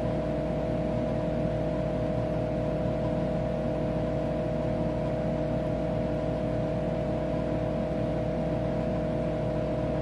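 Steady hum of a running Tektronix 4054A computer, with a constant mid-pitched tone over an even background whir.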